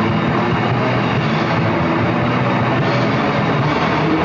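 Live rock band playing: electric guitars, bass guitar and drum kit, steady and loud throughout.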